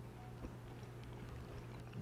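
Quiet room tone with a steady low hum, and one faint click about half a second in.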